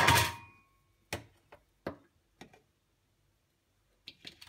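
A rice cooker's power cord and plug being handled: four light, sharp clicks and knocks spread over about a second and a half.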